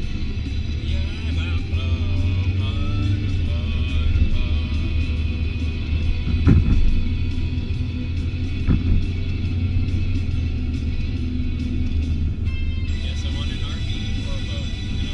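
Music playing inside a moving car's cabin over a steady low rumble of engine and road noise, with a voice singing along in the first few seconds. There are two brief knocks about halfway through.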